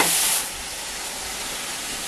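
A foil balloon being blown up by mouth: a loud rush of breath into the balloon's valve in the first half second, then a steady, softer hiss of blowing.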